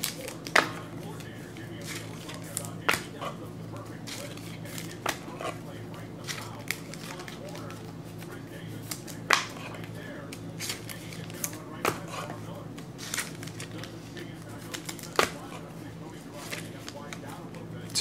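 Trading cards and their packaging being handled on a table: scattered light taps and rustles, about one every couple of seconds, over a steady low hum.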